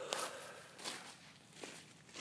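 Footsteps on a forest floor of dry leaves and grass, three steps roughly evenly spaced.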